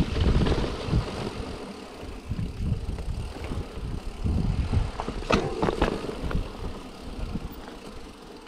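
Mountain bike rolling down a dirt forest trail: tyre rumble over the ground and rattling of the bike, with wind on the microphone, loudest at the start and easing off. A sharp clack about five seconds in.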